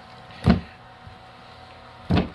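A single heavy thump about half a second in as the board lid is set down on the glass aquarium's rim, over a steady low hum from the running fog equipment.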